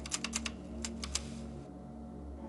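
Typewriter keys clacking in a quick, irregular run, then a few spaced strokes, stopping about a second and a half in, over a low steady room hum.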